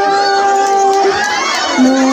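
Crowd of children and adults shouting and cheering while scrambling for thrown saweran coins and treats. A long held musical note runs underneath, breaking off about a second in, and a new lower note starts near the end.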